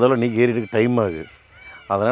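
A man's voice speaking in short phrases.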